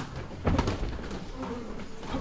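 Gloved sparring in a ring: a sharp smack of a strike at the start, then a heavy thud about half a second in, with a few short low hum-like sounds later on.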